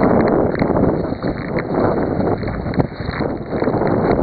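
Force 6 wind buffeting the microphone on a sea kayak: a loud, rough, uneven rushing noise that swells and dips, with the sea's wash mixed in.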